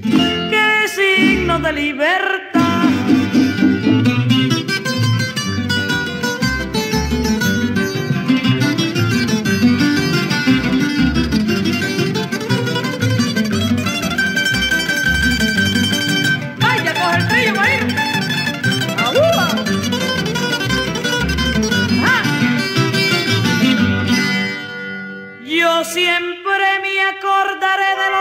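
Instrumental break of a Cuban guajira: plucked guitar-family strings carry the melody over a steady rhythmic accompaniment, with a brief drop in level just before the end.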